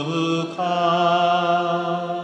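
A man's voice chanting a liturgical phrase in long, held notes, stepping to a new note about half a second in.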